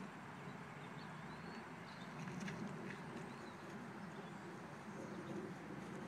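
Quiet outdoor ambience with a few faint, short bird chirps.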